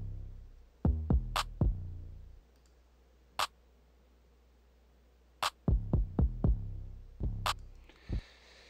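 Programmed hip-hop drums playing back from a DAW mix: deep 808-style bass hits with long fading tails, and a sharp snare about every two seconds. The kicks drop out for about three seconds in the middle, leaving a single snare.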